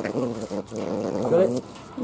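A tayra making short, wavering vocal sounds as it takes raw chicken from a hand while feeding. The sounds stop a little before the end.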